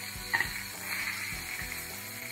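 Metal tongs clink once against a stainless steel skillet as seared lamb chops are lifted out, over quiet background music with a steady beat.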